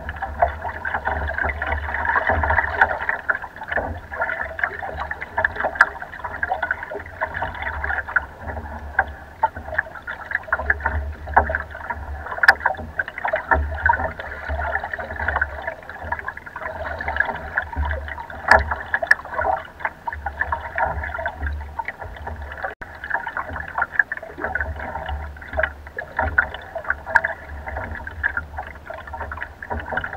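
Choppy lake water splashing and gurgling against the hull of a wooden rowboat under way, with frequent small slaps and a low rumble that comes and goes.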